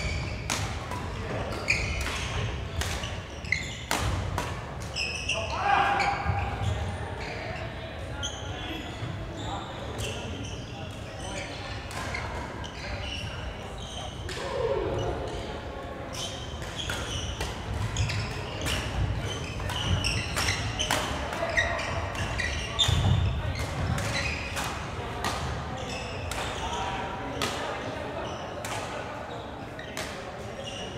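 Badminton play in a large sports hall: repeated sharp racket strikes on the shuttlecock and shoe thuds on the wooden court floor, coming irregularly.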